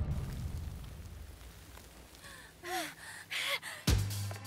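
Cartoon soundtrack: a music cue dies away, then two short gasp-like vocal sounds fall in pitch, and a sudden hit comes near the end.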